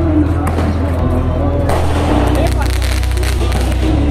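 A 30-shot firework cake firing, a run of sharp cracks starting a little under two seconds in as its shells launch, over loud background music with a heavy bass and some voices.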